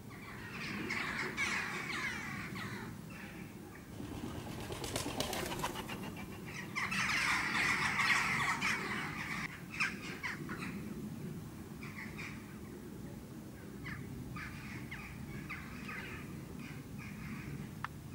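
Several small birds chattering and calling, in two louder spells of dense chatter near the start and around the middle, then scattered short calls.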